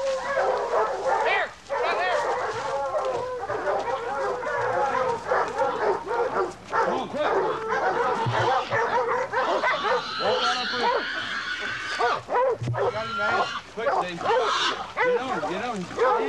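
A pack of hog-hunting dogs barking and baying without a break, many short overlapping barks and yips at a wild boar held at bay in the brush.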